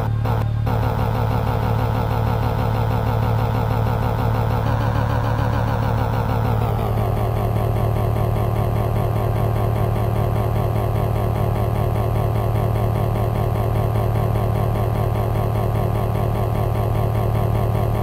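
Steady, buzzing electronic synthesizer drone over a deep low hum. About five seconds in its upper tones lift, then slide down in pitch, and it holds steady after that.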